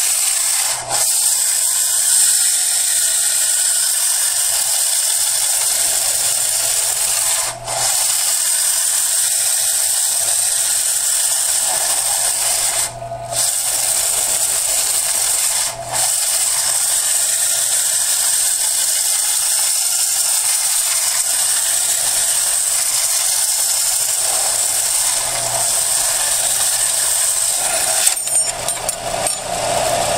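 Vertical belt sander running with a one-eighth-inch aluminum bar pressed against the belt, grinding down the bandsaw-cut edge in a steady, hissing grind. The grind has a few momentary breaks, and near the end the piece comes off the belt. The metal heats quickly as it is ground.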